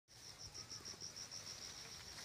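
Faint insect chirping, a high-pitched pulsed trill repeating about seven times a second.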